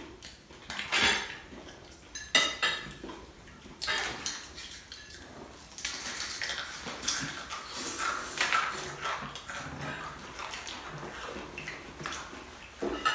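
Crispy fried chicken being bitten, torn and chewed close to the microphone, amid the clatter of foam cups, a lid and tableware on the table. A few sharp crunches come in the first four seconds, then a longer crackly stretch about halfway through.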